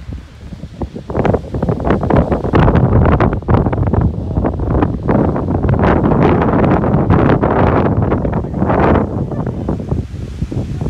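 Wind buffeting a phone's microphone in loud, irregular gusts, a rumbling rush that swells and dips.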